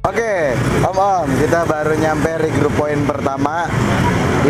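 People talking over a steady hum of road traffic.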